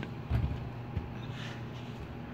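An extension cord's plug being pushed into a wall outlet: one short knock about a third of a second in, then faint handling noise.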